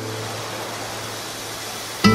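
A steady rushing hiss, like surf or white noise, with no tune in it, while the background music drops out. It fades a little toward the end.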